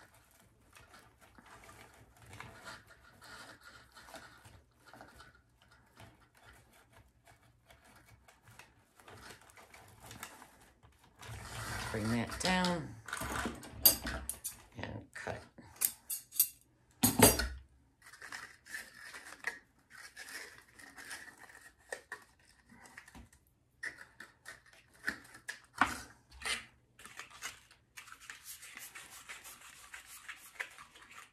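Wired ribbon rustling and crinkling as it is handled and looped, with scattered light clicks. About seventeen seconds in comes a sharp scissor snip through the ribbon, and a brief murmur of voice a few seconds before it.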